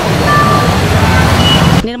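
Loud outdoor background noise, a steady rumble with faint voices in it, which cuts off abruptly near the end as a woman begins speaking into the microphone.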